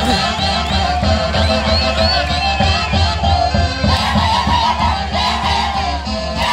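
Andean Santiago dance music played live, with a steady drum beat under high, gliding melody lines. Singing and yells join in over it.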